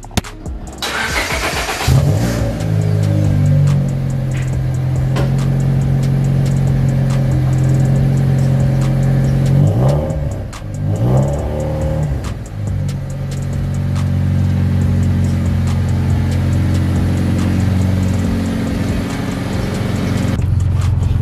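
1998 Honda Civic EK hatchback's single-cam four-cylinder cold-starting through an aftermarket exhaust. It catches about two seconds in and settles into a loud, steady cold idle, with the note wavering briefly around the middle.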